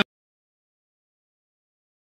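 Silence: the sound track cuts out abruptly at the very start, ending commentary and crowd noise, and nothing at all is heard after that.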